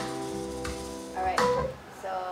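Recorded piano chords over sustained pads playing back through the room's speakers, a sample of a self-composed pop song. The music stops shortly before the end.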